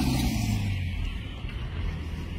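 Motor vehicle engine running close by, a low steady hum that drops slightly in pitch in the first second, over outdoor noise.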